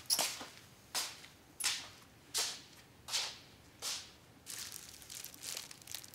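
Footsteps: shoes scuffing on a hard floor at a walking pace, about one step every 0.7 seconds, growing softer and less distinct in the last two seconds.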